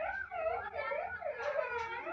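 A high, wavering whine that rises and falls in pitch, sounding like a voice whimpering.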